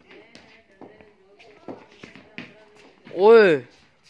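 One loud shout from a person during backyard cricket, a drawn-out call that rises and then falls in pitch, about three seconds in. Before it there is faint talk and a few light taps.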